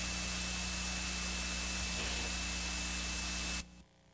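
Steady hiss and static from a blank stretch of VHS tape playback, with a low mains hum and a faint steady high whine underneath. It cuts off suddenly near the end.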